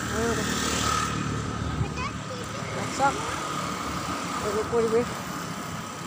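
Street traffic noise with a motor vehicle passing close by in the first two seconds, over short calls of people's voices.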